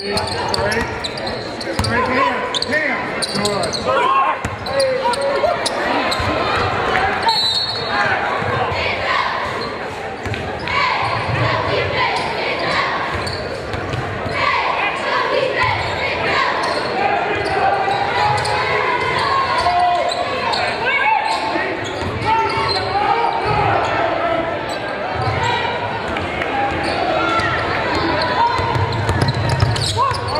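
Basketball being dribbled on a hardwood gym floor during live play, a run of short low thumps, under a steady mix of players' and spectators' voices in a large hall.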